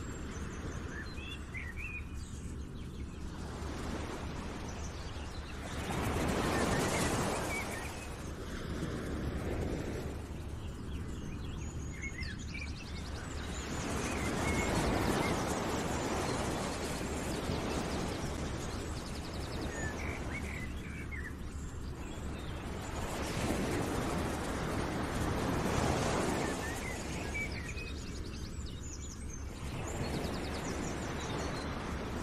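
Outdoor nature ambience: small birds chirping now and then over a rushing noise that swells and fades three times, roughly every eight to nine seconds.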